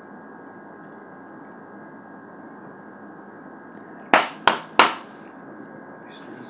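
A steady low hiss, then, a little past the middle, three sharp snaps of a tarot deck being handled, about a third of a second apart.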